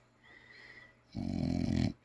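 A bulldog being petted lets out a single low grunt lasting under a second, about halfway through, after a second of near quiet.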